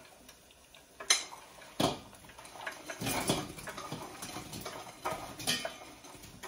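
Kitchen bowls and utensils clattering against a stainless steel pot and the counter: sharp knocks about a second in and just before two seconds, then a run of clinking and scraping through the middle, with another knock near the end.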